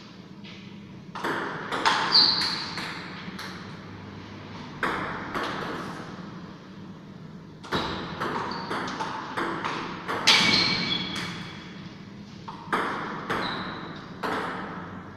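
Table tennis ball being hit back and forth between paddles and bouncing on the table: runs of quick, sharp clicks, several with a short high ring. Pauses between points separate the runs.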